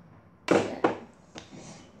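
Two sharp knocks close to the microphone, about a third of a second apart, followed by a much fainter click.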